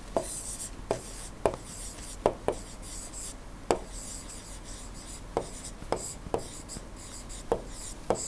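Stylus writing on a tablet screen: irregular sharp taps with faint scratching as a word is handwritten.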